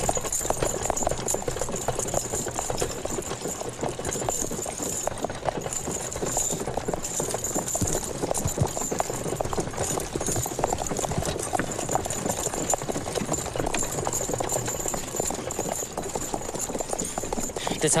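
Horses' hooves clopping and a horse-drawn covered wagon rattling along a dirt road: a dense, steady run of clops and knocks with a steady high hiss above.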